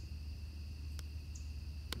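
Crickets trilling steadily in two high, unbroken tones over a low, steady rumble, with a faint click about a second in.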